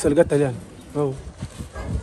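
A man's voice in short spoken phrases with brief pauses between them: speech only.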